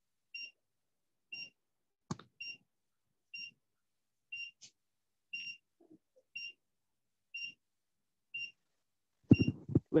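Short, high electronic beeps repeating evenly about once a second, with a single sharp knock about two seconds in. A voice starts near the end.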